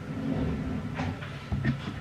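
Close-up handling and movement noise as skincare things are picked up: a low rumble with one sharp click about a second in and a few soft knocks near the end.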